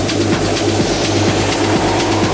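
Techno track in a build-up: a rising noise sweep over a held bass note and a lighter kick drum.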